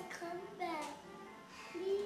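A young child's high, wordless sing-song voice, a few short notes that slide up and down in pitch.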